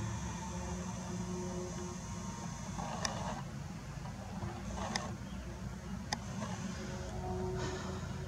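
Faint steady low background rumble with a few brief soft clicks spread through it.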